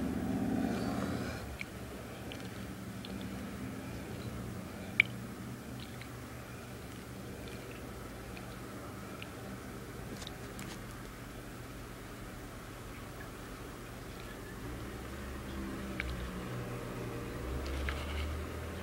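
Water swished gently around a black plastic gold pan as concentrates are worked down to show the gold, with a few small clicks over a low steady hum.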